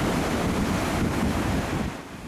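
Ocean surf breaking and washing up a dark pebble beach, a steady rushing noise with a low rumble, and wind buffeting the microphone.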